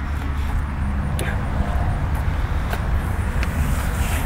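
Steady low background rumble, with a couple of faint clicks.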